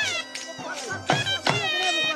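Live Saraiki folk dance music: a shrill double-reed pipe (shehnai) playing a bending, gliding melody over steady dhol drum beats.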